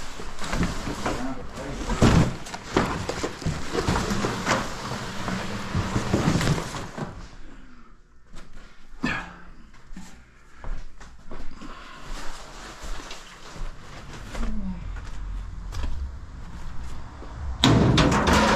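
Flattened cardboard, boxes and papers being shifted and dropped onto a pile: a busy rustle with many sharp knocks for about the first seven seconds. After that it goes quieter, with scattered knocks.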